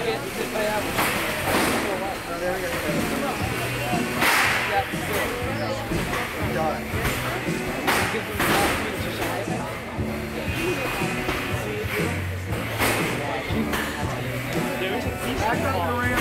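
Background music with a steady beat and crowd chatter, broken by several sharp bangs of small combat robots striking each other and the arena walls.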